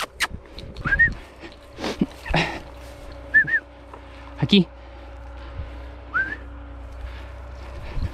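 Short rising whistles calling a hunting dog: one about a second in, a quick pair in the middle and one more near six seconds, with brief rustles and knocks in between.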